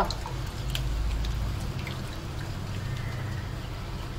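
A spoon stirring a milk-and-flour white sauce in a nonstick pan, with faint liquid sounds and a few light clicks over a low steady hum.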